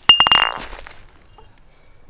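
A single sharp, glassy clink just after the start, ringing briefly and dying away within about half a second.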